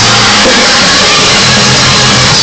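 Live gospel choir singing with organ, keyboard and drums, loud and continuous.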